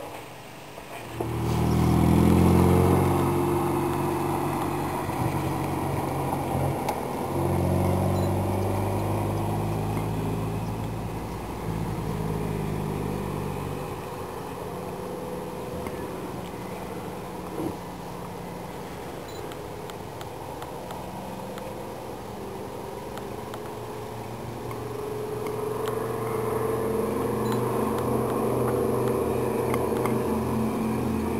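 An engine runs loudly from about a second and a half in, its pitch stepping up and down, and dies away by about fourteen seconds. Near the end the drone of a DC-3's twin radial piston engines grows louder as the airliner comes in to land.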